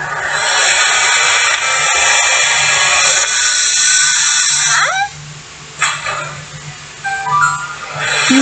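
Cartoon soundtrack playing back: dense music and sound effects for about the first five seconds, then quieter, with a brief rising cry and a quick run of rising tones near the end, over a steady low hum.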